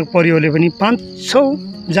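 A man speaking, with a steady high-pitched drone of insects behind him.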